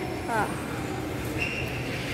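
Steady background noise of a large indoor shopping-mall atrium, an even hum and hiss, with a short steady high tone starting about one and a half seconds in.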